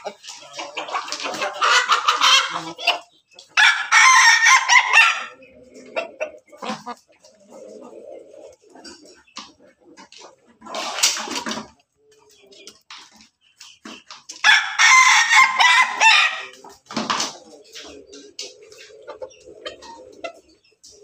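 Crossbred pelung–bangkok–ketawa roosters crowing again and again, about five crows, some of them long and drawn out. Between the crows hens cluck quietly.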